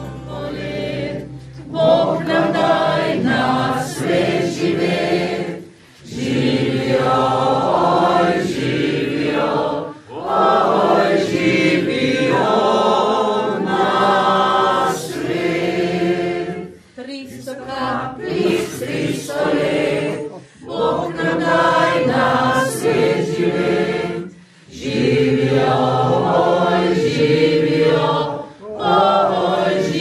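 A choir singing in phrases of a few seconds, with short breaks between them.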